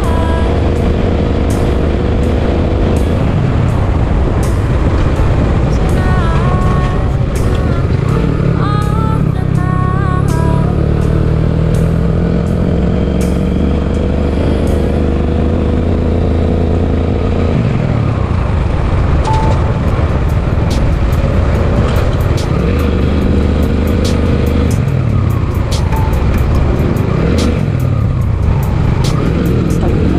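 Suzuki Gixxer SF motorcycle running at a steady cruise, a continuous low rumble, with background music over it: a melody in the first part and a steady ticking beat in the second half.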